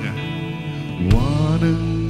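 A man singing a slow Tamil worship song into a microphone over a sustained low accompaniment with electric guitar; about a second in, his voice slides up into a long held note.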